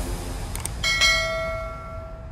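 Notification-bell chime sound effect from a subscribe-button animation: a couple of quick clicks, then a bell-like chime struck twice in quick succession about a second in, ringing on and slowly fading.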